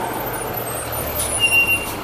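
Yellow school bus engine running as the bus pulls up and stops at the curb. About a second and a half in there is a short high hiss with a steady squeal from the brakes.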